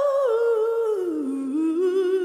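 A solo singer's wordless vocal line, a melisma gliding steadily down in pitch over about a second and a half and then rising a little to hold a lower note.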